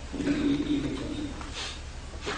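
A man's drawn-out, low 'mmm' hesitation sound into a microphone, followed by a short breath, in a pause between phrases of his talk.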